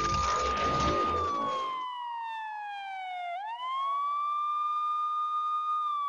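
Ambulance siren wailing: the pitch holds high, falls slowly for about two seconds, then sweeps quickly back up and holds again. A dense noisy background sounds under it for the first two seconds or so, then drops away, leaving the siren alone.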